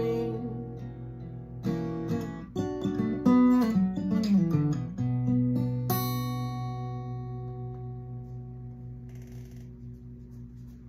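Solo acoustic guitar playing the song's closing phrase: a few strummed chords and a descending run of notes, then a final chord struck and left ringing, fading slowly away.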